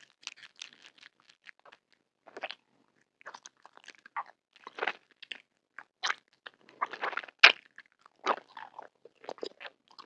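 Close-miked mouth biting and chewing a red gummy tongue-shaped candy: short, irregular mouth noises and clicks, the loudest about seven and a half seconds in.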